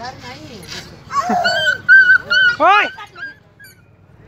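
Puppies whining, a run of high, held whines starting about a second in, ending in a short rising-and-falling yelp near the three-second mark.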